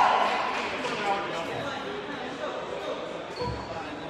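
A basketball bounced on a hardwood gym floor, a dull thud late on, with the chatter of voices in the gym. The tail of a steady horn tone fades out right at the start, the scoreboard signal ending the period.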